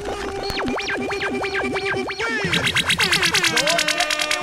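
Electronic sound effects in a DJ mix transition, with no bass beat: a synth tone warbling down and up about five times a second, then from about halfway a fast stuttering run of clicks with sliding tones.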